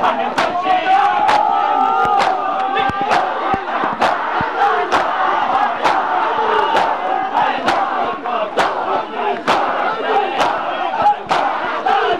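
Crowd of mourners doing matam, beating their chests in unison with a sharp slap about once a second, over a mass of loud shouting and chanting male voices.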